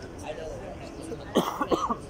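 A person coughing, two loud coughs close together about one and a half seconds in, over faint background talk.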